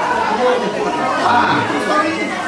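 Chatter: several people talking at once, with the echo of a large hall.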